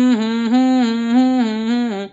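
A man humming one long held note for about two seconds, its pitch wavering gently up and down.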